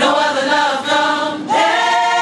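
Gospel choir singing, with a new chord coming in and held about one and a half seconds in.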